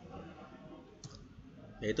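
A single short mouse click about a second in, against faint room tone.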